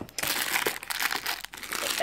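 Plastic wrappers crinkling and rustling as hands shift packaged items in a packed shoebox: an irregular run of small crackles.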